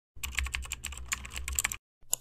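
A quick run of sharp, typing-like clicks, about ten a second, over a low hum, cutting off suddenly near the end.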